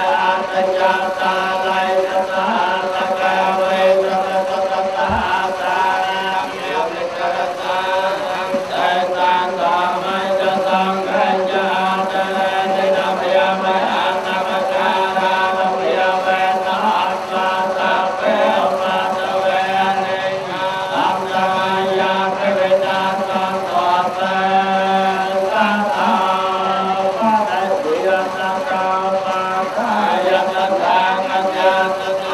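Buddhist monks chanting in unison into a microphone, a steady, unbroken drone of several voices.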